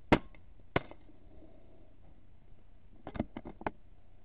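Air rifle shot: a sharp crack at the start, a second sharp smack about two-thirds of a second later, then a quick run of about five clicks a little after three seconds in.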